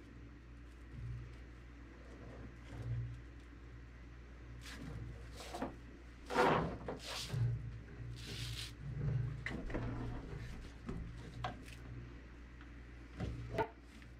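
Faint rustling and soft clicks of nylon rope and bungee lines being handled and looped together by hand. A few short swishes come in the middle, then scattered light clicks, over a low steady hum.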